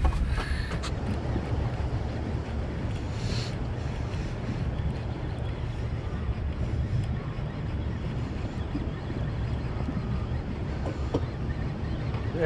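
Wind buffeting the microphone over a steady low rumble aboard a small boat at sea, with a couple of faint knocks.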